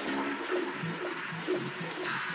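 Techno from a live DJ set: a repeating low synth and bass pattern, with a hissing noise wash at the start that fades over the first half second.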